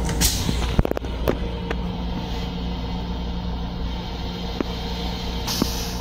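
Steady low rumble and hum of an M7 electric railcar, heard inside its small restroom. About a second in, a quick cluster of sharp plastic clicks and knocks comes as the toilet seat is raised. A few single clicks follow, and near the end there is a brief hiss.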